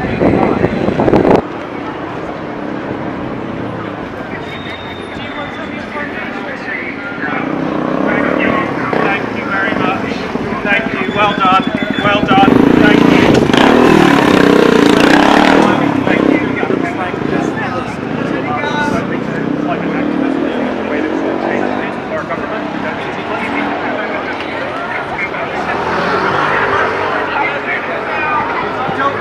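Road traffic and people talking, with a motorcycle engine running close by about halfway through, where it is the loudest sound for a few seconds.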